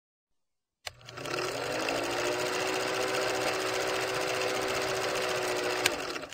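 Old film projector running: a fast, even mechanical clatter with a motor hum that rises in pitch as it comes up to speed, starting with a click about a second in. A sharp click comes near the end.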